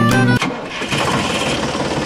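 Miniature toy tractor running with a dense, steady mechanical rattle, after background music cuts off about half a second in.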